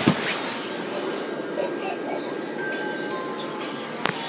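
Several animated Christmas toys playing their songs and recorded voices all at once, a steady jumble of tinny music and singing with no one tune standing out. A single sharp knock at the very start, like the phone being bumped.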